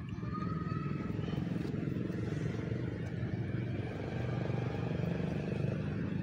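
A small engine running steadily nearby: a low, even drone with a rapid pulse.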